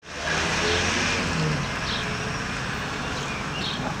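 Outdoor street ambience: a steady wash of traffic noise with faint voices mixed in, starting abruptly at the cut.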